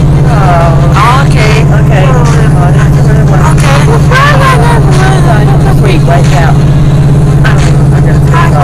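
High, squeaky cartoon voice sounds that slide up and down in pitch, over a loud, steady low hum.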